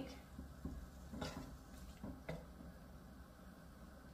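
A wooden spatula stirring shrimp in a frying pan, giving a few faint clicks and scrapes against the pan, the clearest about a second in and again just after two seconds, over a low steady hum.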